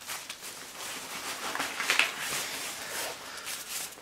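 Soft, irregular rustling of a fabric rucksack pocket being handled: cutlery tucked away and a fabric wallet drawn out.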